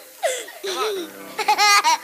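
A small boy laughing helplessly into a handheld microphone, high-pitched, in two stretches with the second near the end, unable to get the song started.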